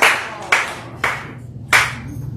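Hand clapping dying away: four last sharp claps, spaced further apart each time, after a run of faster applause.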